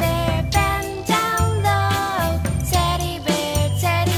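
Instrumental children's music: a melody of short pitched notes over a steady bass line, with one downward sliding note a little after two seconds in.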